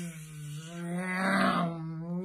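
A man's voice imitating an airplane engine, one long droning vocal hum at a nearly steady pitch that turns louder and rasping about halfway through.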